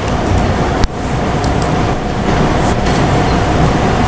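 Steady background room noise: a low rumble and hiss with a faint steady hum, briefly dipping just under a second in.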